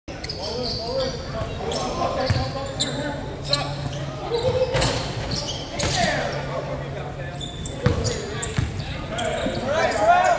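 Basketball bouncing on a hardwood court with sneakers squeaking and players calling out, in a large gym.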